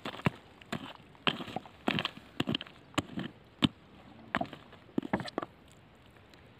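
A steel-headed hammer striking rock again and again, breaking stones loose from a bank of rock and gravel: about a dozen sharp, uneven knocks, roughly two a second, that stop shortly before the end.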